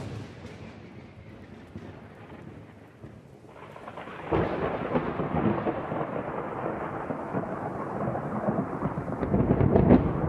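Recorded thunderstorm: a sharp thunderclap right at the start fades into a low rumble. From about four seconds in, a louder rolling rumble with a rain-like hiss sets in and keeps building.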